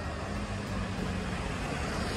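A light truck driving along the street, its engine and tyres growing slightly louder as it draws near, over a steady traffic hum.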